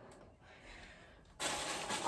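Near silence, then about a second and a half in a plastic mailer bag starts rustling as it is picked up and handled.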